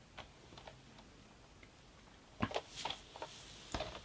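A few faint ticks, then several sharper clicks and knocks from about two and a half seconds in: a hard plastic Playmobil toy car being handled and set down on a turntable.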